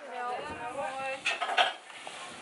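A horse lorry's wooden loading ramp clattering and knocking as someone walks down it, with a short burst of loud clatter about a second and a half in. A voice is heard briefly before it.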